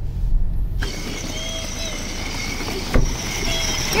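Low rumble of a car moving slowly, cutting off abruptly less than a second in. Then a steady high hiss with a few faint brief tones and a single sharp click about three seconds in.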